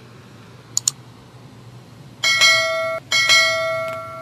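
Two quick mouse-click sound effects, then a notification-bell chime that rings twice. The first chime cuts off short and the second fades away. These are the sound effects of a YouTube subscribe-button-and-bell animation.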